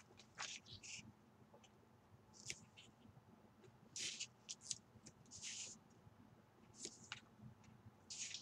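Faint, scattered rustles and scrapes of paper and a roll of tape being handled on a cutting mat, coming in several short bursts.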